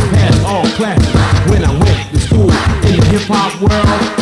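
Late-1980s New York hip hop track: a rapper's vocals over a drum beat and a steady bassline.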